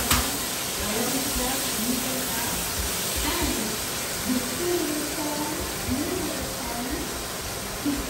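Sliced onions sizzling steadily in hot oil in a skillet as they sauté, with quiet voices in the background.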